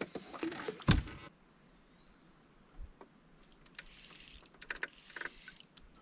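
A small crappie released over the side of a boat drops back into the lake with a single short splash about a second in. From about halfway on, faint scattered clicking and light rattling.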